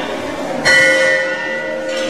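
A temple bell struck once, a little over half a second in, ringing on with a clear, steady tone that slowly fades.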